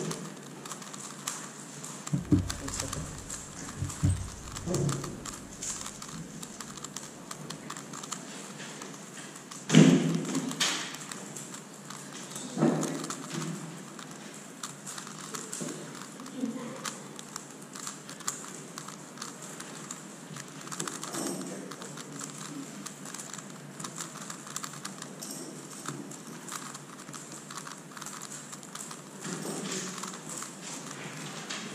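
Megaminx puzzle being turned quickly by hand, a continuous patter of small plastic clicks, with a few louder knocks, the loudest about ten seconds in.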